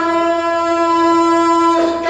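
A man's voice holding one long, steady sung note in a Pashto nauha recitation, breaking off near the end.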